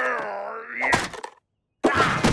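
Cartoon cat's frustrated wailing groan, one drawn-out vocal cry that dips and then rises in pitch over about a second and a half. A sudden loud thunk follows near the end.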